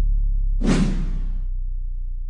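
Sound-effect whoosh from a broadcast logo animation, lasting about a second and starting about half a second in. Under it, a deep low rumble from an earlier impact hit slowly fades.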